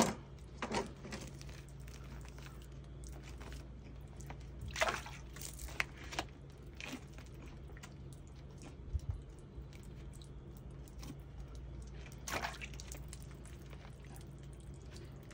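Soft, wet handling sounds of a rabbit being skinned by hand, the hide pulled off the carcass, with a few scattered short squelches and taps over a low steady hum.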